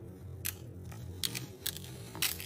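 Knife blade cutting into sprinkle-coated kinetic sand, giving a few sharp crisp crunches over a low steady hum.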